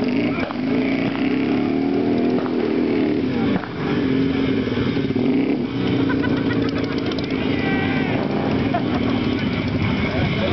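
Motorcycle engine idling steadily, with people talking in the background.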